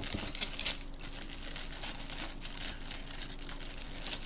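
A packaging bag being handled and pulled at, crinkling and rustling unevenly with small crackles throughout, as someone tries to get the pens out of it.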